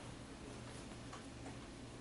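Quiet room tone with a steady low hum and a few faint, irregular ticks.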